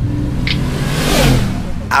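A car sound effect inside a hip-hop track: a car revving and sweeping past, swelling to a rushing hiss in the middle and falling in pitch as it goes, over sustained low bass notes. Rapping starts at the very end.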